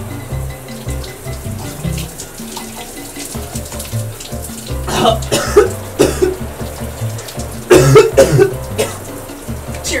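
Running water, like a shower, under background music with a bass line. A man coughs and sputters about five seconds in, again around eight seconds, and once more at the end.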